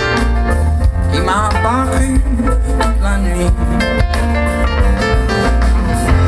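A live rock band playing, with a drum kit keeping a steady beat over a heavy bass line, and guitar and keyboards on top.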